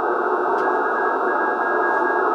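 Steady hiss of HF band noise from the Icom IC-7300 transceiver's speaker, held within the receiver's narrow audio passband, with no clear signal standing out.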